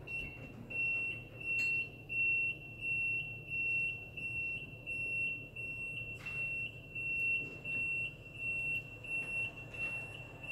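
Skyjack SJ4626 electric scissor lift's descent alarm beeping as the platform lowers: one high-pitched beep about every 0.7 seconds, with a low steady hum underneath.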